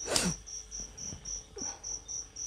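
A cricket chirping steadily in a high, even pulse, about five chirps a second. Right at the start there is a short, breathy vocal sound that falls in pitch.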